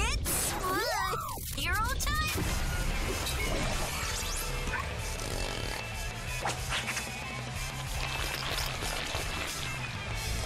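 Cartoon soundtrack of an alien-transformation sequence: electronic music with sound effects, with a few quick swooping glides about a second in.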